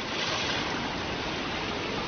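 Swollen, muddy floodwater rushing past in a fast, turbulent river: a steady, even wash of water noise.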